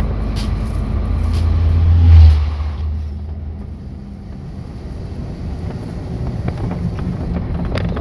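An oncoming bulk-grain truck passes close by, heard from inside a moving truck's cab. Its deep rumble swells to a peak about two seconds in, then fades, over the cab's own steady engine and road noise.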